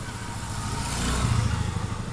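A motor vehicle's engine running in the background, growing louder to a peak about a second in, then easing off.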